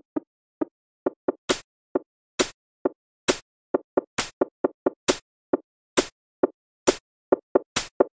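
Sparse electronic percussion in an AI-generated song: short, dry knocking plucks in an uneven pattern, with a sharper, brighter hit about once a second, and silence between the hits.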